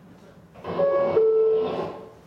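Two-note descending chime imitating the New York subway door chime: a short higher note, then a lower note held a little longer.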